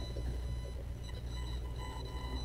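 Meeting-room tone in a pause between speakers: a steady low hum with faint, thin steady high tones over it.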